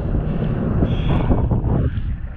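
Wind buffeting a GoPro's microphone, a loud low rumble that drops away shortly before the end.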